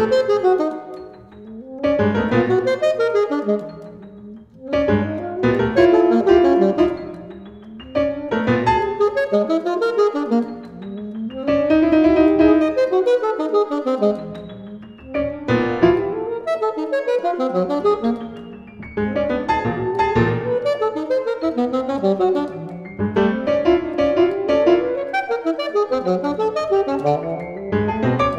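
Contemporary classical duo for saxophone and piano. Piano chords are struck every few seconds and left to ring and fade, with saxophone tones sounding over them.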